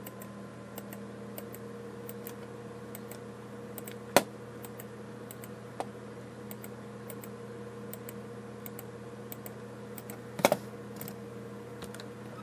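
Computer mouse and keyboard clicking at an unhurried pace, about one or two clicks a second, with a sharper click about four seconds in and a quick cluster of louder knocks about ten and a half seconds in, over a steady low hum.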